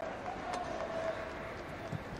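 Football stadium crowd ambience during open play: a low, steady murmur with a faint held tone.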